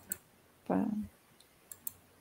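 Computer mouse clicks: a pair of sharp clicks at the start and two more close together near the end.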